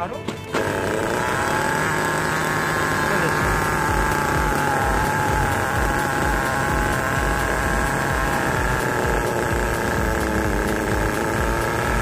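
A 1/10-scale RC buggy's nitro glow engine catching about half a second in and then idling steadily with a fast, even rattle.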